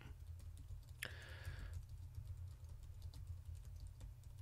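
Faint typing on a computer keyboard: a run of light, irregular key clicks over a steady low hum, with a short hiss about a second in.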